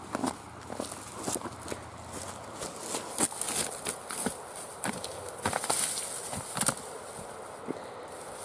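A rock rolled down a dry, grassy hillside, tumbling and bouncing with a run of irregular knocks and crackles through the grass, busiest about three seconds in and again between about five and seven seconds.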